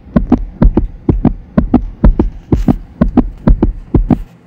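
A rhythmic beat of quick, deep thumps, about six a second.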